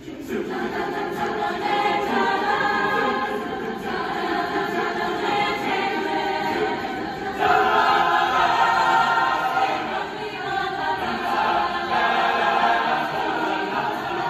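Large mixed choir singing, coming in just after a quieter moment and swelling to a louder passage about halfway through.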